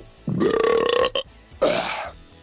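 A man's long, drawn-out burp lasting about a second, followed near the end by a short laugh.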